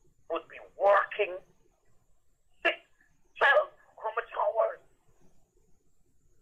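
Speech only: a caller talking over a telephone line, narrow and thin in tone.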